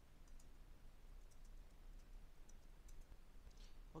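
Near silence with a few faint computer clicks, mostly in pairs, over the first three seconds.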